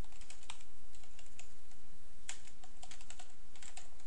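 Typing on a computer keyboard: a run of irregular key clicks as a command is typed out.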